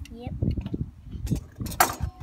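Metal kitchen tongs clinking and rattling, with one sharp clank near the end that rings on briefly, over low wind rumble on the microphone.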